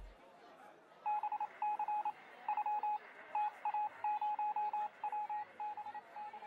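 A series of short electronic beeps on one pitch, coming in irregular groups of two to five, starting about a second in.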